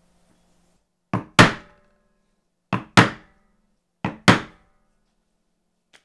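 Mallet blows on leather laid over a stone block, coming in three pairs: a light tap and then a harder strike, repeated about every one and a half seconds.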